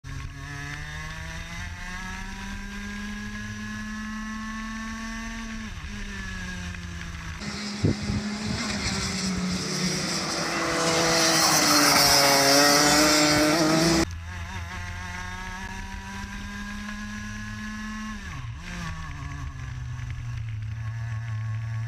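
A racing kart's single-cylinder engine at high revs, heard onboard: its pitch climbs slowly along a straight and drops sharply as the driver lifts off, twice. In the middle, a few seconds heard from trackside: a sharp knock, then a kart engine rising and falling in pitch as it passes, with loud wind noise, cut off abruptly.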